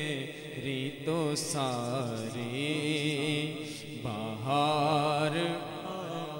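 Unaccompanied naat singing: a man's voice through a microphone holds long, wavering, ornamented vowels in phrases of about a second each, with no instruments.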